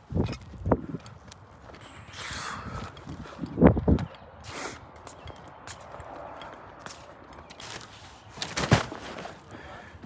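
Footsteps crossing gravel and a concrete slab with scattered knocks and handling noise. There are two louder thumps, one a little over a third of the way in and one near the end.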